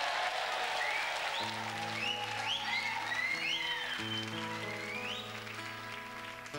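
Studio audience applauding and cheering as an acoustic guitar starts playing about a second and a half in, with held notes and chords ringing under the fading applause.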